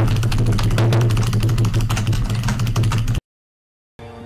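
A comedic meme sound effect for an overloaded computer: a steady low mechanical hum with fast rattling clicks, like a machine straining. It cuts off abruptly about three seconds in.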